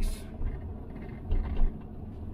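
Camper van driving slowly, a steady low engine and road rumble heard from inside the cab, with two short louder bumps a little past halfway.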